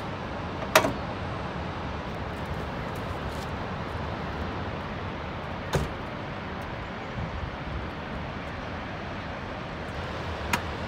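Steady outdoor background rumble, a mix of traffic and distant falling water, with two sharp clicks, one about a second in and one near the middle.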